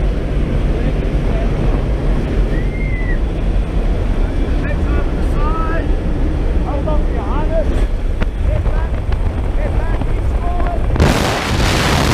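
Steady drone of a skydiving plane's engine and wind noise in the cabin, with faint raised voices. About eleven seconds in, a sudden loud rush of wind on the microphone as the tandem pair moves into the open doorway.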